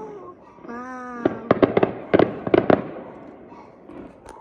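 Fireworks going off: a quick run of about six sharp bangs over about a second and a half, starting about a second in.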